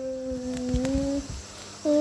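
A steady low hum of two held tones, with a few dull low thumps under it, dying away about a second and a half in.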